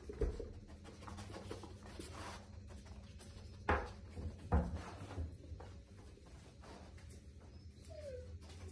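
A dog sniffing and moving about while searching for a scent, with small scuffs and clicks and two louder knocks a little under a second apart near the middle.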